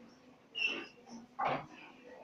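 Marker pen writing on a whiteboard: a short high-pitched squeak about half a second in, then a brief scratchy stroke about a second and a half in.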